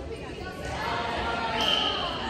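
Indistinct chatter of several voices echoing in a large hall, growing louder about halfway through.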